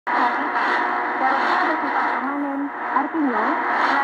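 Shortwave AM broadcast received on an ATS-20+ receiver: a voice speaking, narrow-band and muffled, over a steady hiss of static.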